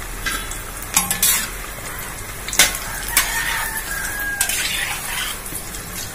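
Masala bondas deep-frying in hot oil in a kadai, a steady sizzle, with a metal spoon clinking and scraping against the pan several times as the bondas are stirred.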